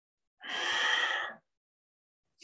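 One forceful breath, about a second long, the paced breathing of a yoga spinal-flex exercise.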